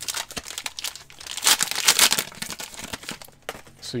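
Plastic wrapper of a Panini Chronicles basketball card pack crinkling as it is handled and torn open by hand, loudest about halfway through.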